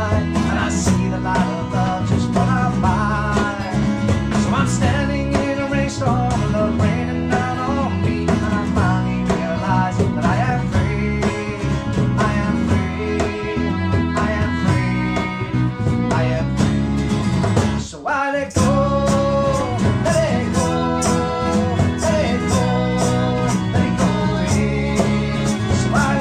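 Acoustic band playing an instrumental passage of a country-folk song: strummed acoustic guitars and a bass guitar under a sliding fiddle melody. The music drops out for a moment a little past the middle, then carries on.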